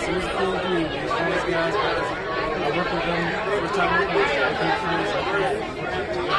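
People talking over one another in steady, overlapping chatter.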